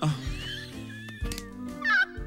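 Background music with a steady bass line, and a cat meowing over it in high, wavering calls, once near the start and again near the end.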